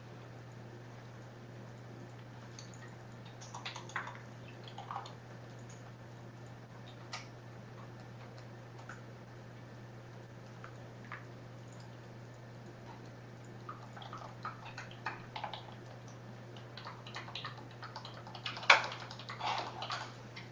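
Quiet room with a steady low hum, and scattered soft clicks and taps of a computer keyboard and mouse. The clicks come thicker in the last few seconds, with one louder click near the end.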